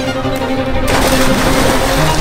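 Background music with steady tones; about a second in, a sudden loud splash of bodies hitting pool water, followed by churning water.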